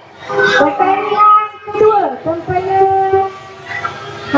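A voice singing a melody, with gliding notes and long held tones.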